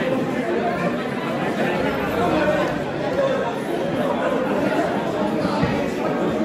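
A crowd of people chatting at once in a large hall: a steady babble of overlapping conversation, with no music playing.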